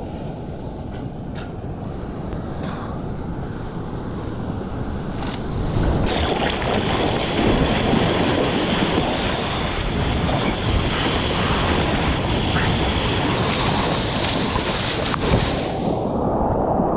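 Seawater sloshing with a few splashes against the camera in the first six seconds, then from about six seconds in a louder steady rush of water and wind on the microphone as the surfboard planes along a wave, until it drops back in the whitewash near the end.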